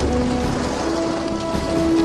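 The icebreaker Healy's bow crushing through ice, heard as a steady hiss with a deep low rumble. Background music plays over it in long held notes that shift to a higher note about a second in.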